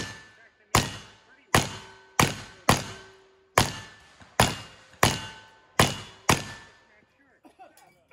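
A rapid string of ten pistol shots from a pair of Ruger New Model Single-Six .32 H&R revolvers firing black-powder loads, about half a second to a second apart, the first right at the start and the last about six seconds in. Several shots are followed by the ring of hit steel targets.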